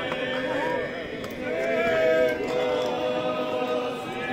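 A group of people singing in long held notes, over crowd chatter.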